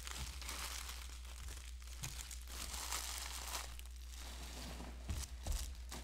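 Cellophane wrappers of Panini Prizm cello packs crinkling and tearing as the packs are ripped open by hand, with a few louder crackles near the end.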